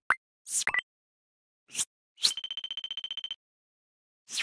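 Animated-outro sound effects: a few short swishes with gaps of silence between them, then a quick run of high beeps, about a dozen a second, lasting about a second.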